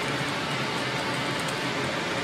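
Steady outdoor street noise: an even hiss with no single clear source standing out.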